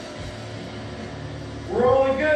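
A man's loud, drawn-out shout near the end, over a low steady background of room noise.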